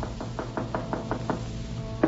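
Knocking on a door, a quick run of about half a dozen raps, as a radio-drama sound effect over held music.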